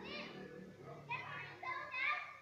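Children's voices: short, high-pitched calls, one near the start and a burst of several from about a second in.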